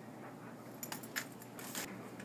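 Several sharp clicks and light knocks in quick succession in the second half, over faint room tone.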